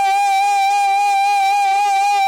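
Male dakla singer holding one long, high sung note with a slight waver.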